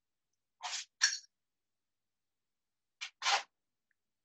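A person sniffing through the nose: two quick pairs of short sniffs, one about a second in and one near the end.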